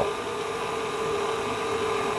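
KitchenAid stand mixer running at low speed, its wire whisk beating heavy cream in a stainless steel bowl: a steady motor hum with an even whir.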